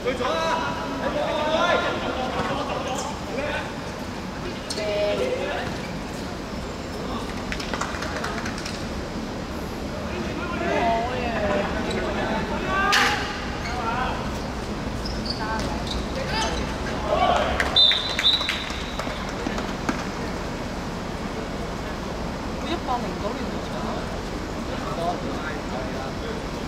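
Footballers' scattered shouts and calls during play, with one sharp kick of the ball about thirteen seconds in.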